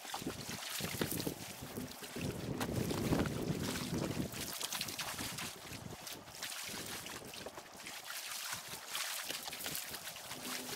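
Wind buffeting the microphone, with a stronger gust about three seconds in, over small waves lapping at the shore and scattered light splashes and knocks.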